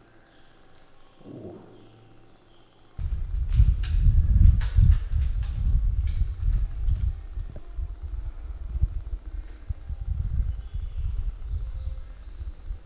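A loud, uneven low rumble on a handheld camera's microphone as it is carried while walking. It starts suddenly about three seconds in, with a few sharp clicks soon after.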